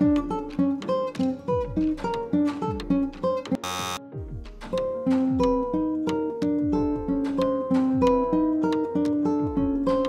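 Nylon-string classical guitar playing a left-hand finger-independence exercise: single notes alternating between the first and third strings, fingers held down so the notes run legato. The notes come quickly at first, then slower and more sustained after a short burst of noise a little before halfway.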